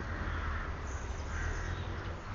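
A crow cawing over a steady low rumble.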